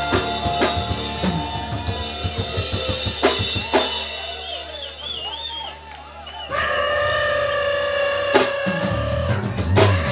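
Live ska band playing: drum-kit hits under long held horn notes, easing into a quieter break in the middle. About two-thirds of the way in, the band comes back with held horn chords and a loud drum hit.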